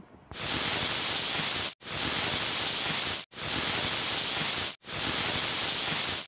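Aluminium stovetop pressure cooker whistling: steam hisses in a high-pitched blast through the weight valve as the cooker reaches full pressure and vents. Four whistles come one after another, each about a second and a half long and each stopping abruptly. These counted whistles mark the dal and chayote cooking through.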